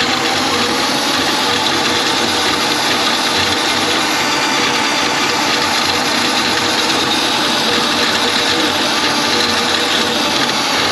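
Electric drum-type drain auger running, its spinning cable rattling steadily as it is fed into a kitchen sink drain line clogged with grease.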